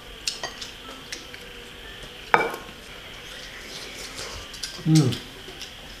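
Light clinks of a metal ladle against porcelain bowls as congee is served, a few small clicks and one louder clink a little over two seconds in.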